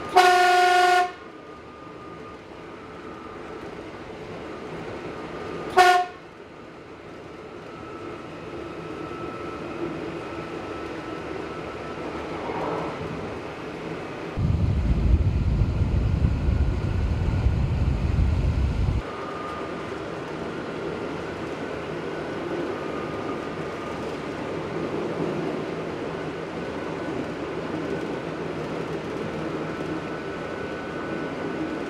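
Narrow-gauge diesel railcar's horn, heard from inside the cab: one blast of about a second, then a short toot about six seconds later, over the railcar's steady running noise. Midway there are about four seconds of loud low rumble that start and stop abruptly.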